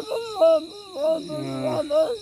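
A man's voice making unintelligible, speech-like vocal sounds that rise and fall in pitch, with a low held hum past the middle. Behind it, insects chirp steadily as a high continuous trill with a faster pulsing above it.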